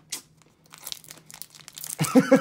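Foil Pokémon booster pack wrappers crinkling as they are handled, a run of irregular crackles that gets busier near the end.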